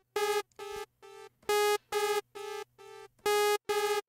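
Sawtooth synth note from Arturia Pigments' analog engine played through its pitch-shifting delay with spray turned off. A short, bright, buzzy note is struck about every two seconds, and each strike is followed by three or four quieter echoes at the same pitch, spaced about half a second apart.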